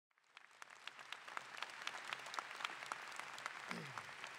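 Audience applauding, dense clapping that fades in from silence over the first half second and then holds steady.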